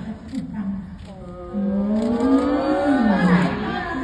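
A woman's voice: a few short sounds, then, about a second and a half in, one long drawn-out vocal sound that slowly rises in pitch and then drops.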